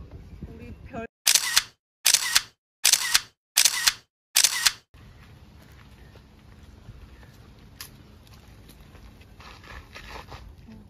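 Camera shutter sound effect clicking five times in quick, even succession, a little under a second apart, followed by quiet outdoor background noise.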